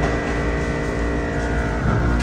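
Steady low rumble and hum with several held, unchanging tones and no distinct events.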